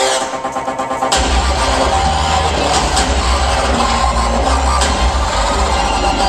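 Loud electronic dance music with heavy bass. The bass cuts out at the start over a stuttering build, then comes back in hard about a second in and carries on with a steady beat.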